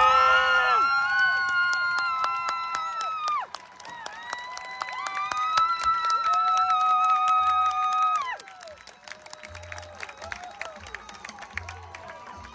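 Marching band's brass and wind sections holding long sustained chords: the first one cuts off about three and a half seconds in, a second swells in about a second later and cuts off around eight seconds in. After that, softer scattered notes at a much lower level.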